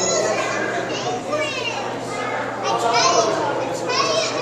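Several children's voices chattering together, with high-pitched calls gliding up and down about a second in and again about three seconds in.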